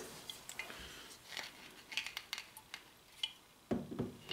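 Faint clicks and light knocks of a whiskey bottle and glassware being handled on a wooden table, with one louder knock near the end.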